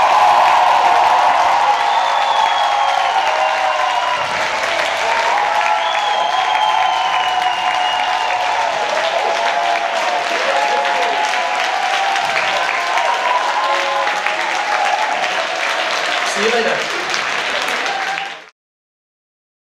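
Theatre audience applauding and cheering, with two drawn-out whistles in the first half.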